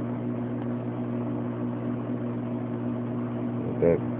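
Steady low electrical hum of aquarium equipment running, one even pitch throughout with no change.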